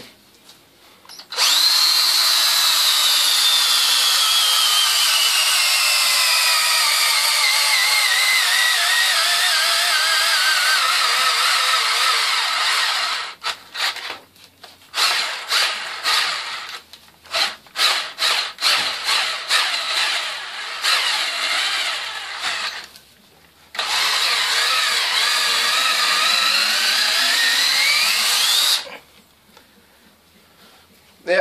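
DeWalt 12 V cordless drill boring into a birch log, its battery pack rebuilt with Chinese sub-C cells under test. The motor whine drops steadily in pitch through a long first run, then comes a string of short trigger bursts, then a second long run that speeds up near the end.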